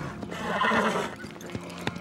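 A horse whinnying for about a second, followed by two sharp hoof knocks, over background music.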